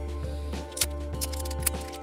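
Soft background music with steady held chords, and a few short crackles from about the middle on as the plastic seal is torn off a whiskey bottle's neck.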